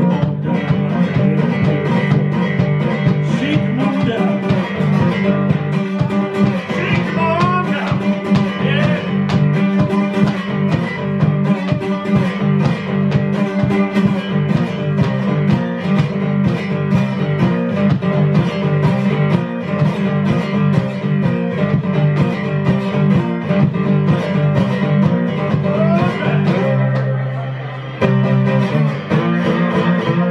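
Blues played on a cigar box guitar with a glass bottleneck slide, the notes gliding between pitches, over a steady percussive beat. The playing eases briefly near the end before picking up again.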